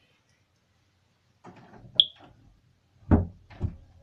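Handling and knocking sounds: rustling with one sharp click about two seconds in, then two heavy thumps about half a second apart.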